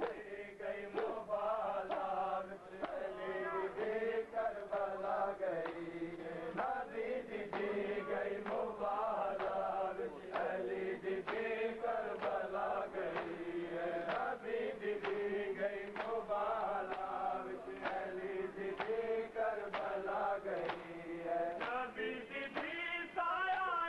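A crowd of men chanting a Punjabi noha (Shia lament) together, with sharp rhythmic matam chest-beating slaps about once a second.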